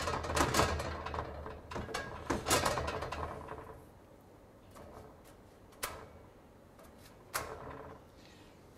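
Light clicks and taps of fingers turning corn tortillas on a metal comal over a gas burner. The clicks come thick for the first few seconds, then it goes nearly quiet apart from two single clicks near the end.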